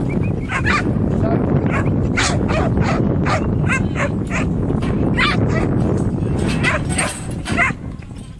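Working kelpie barking at sheep in a yard: a run of short, sharp barks, about two a second, over a steady low rumble.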